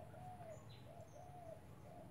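A dove cooing faintly, a short note followed by a longer arched note, the phrase repeated about once a second, with a few faint high bird chirps over it.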